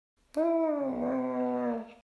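One drawn-out animal call, a growling yowl that starts about a third of a second in, sinks slightly in pitch, holds, and stops just before the end.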